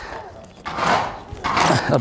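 A farrier's drawing knife cutting a thick wedge hoof pad back flush to the shoe: two cutting strokes, each about half a second long.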